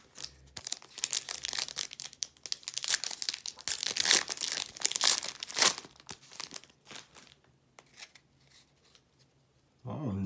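Foil trading-card pack being torn open and crinkled by hand: a run of crackling tears and crumples lasting about five seconds, then a few scattered crinkles.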